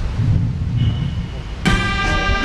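Low rumble of wind on the microphone, then about a second and a half in a brass band comes in suddenly with a loud held chord.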